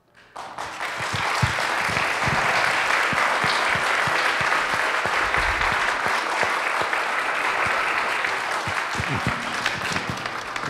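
Audience applauding in a hall, swelling in about half a second, holding steady and fading near the end.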